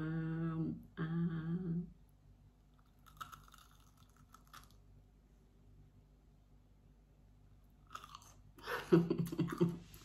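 A woman eats a crisp fried mozzarella stick, chewing with faint crunching. It opens with two drawn-out 'mmm' hums of enjoyment, and near the end she coughs.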